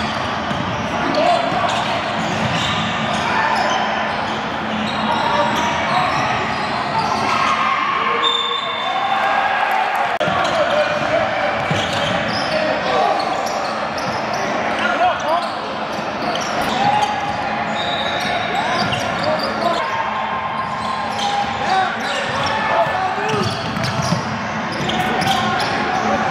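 Live basketball game sound in a large gym: a basketball bouncing on the hardwood court under a steady hubbub of players' and spectators' voices echoing in the hall.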